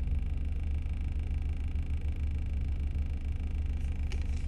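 Steady low rumble of a car, heard from inside the cabin, with no other distinct event.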